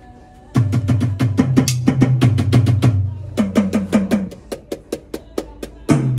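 Alesis Strike Pro electronic drum kit playing a drum beat: quick, evenly spaced hits over sustained low bass notes, starting about half a second in.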